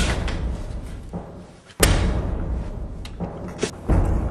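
Heavy booming thuds: one at the start, another about two seconds in and a third at the very end, each dying away slowly, with lighter knocks between.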